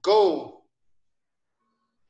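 A single spoken word, 'go', drawn out for about half a second with a rise and fall in pitch, then silence.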